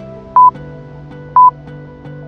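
Two short, high electronic beeps from a workout interval timer, one second apart, counting down the last seconds of an exercise set, over background music with soft sustained chords.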